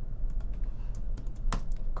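Typing on a computer keyboard: scattered key clicks, with a sharper one about one and a half seconds in.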